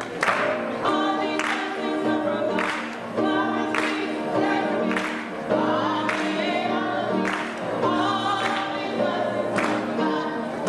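Youth gospel choir singing in several voices, with the singers clapping their hands in rhythm.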